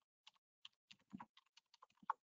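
Faint computer keyboard typing: about eight separate keystrokes in quick, uneven succession.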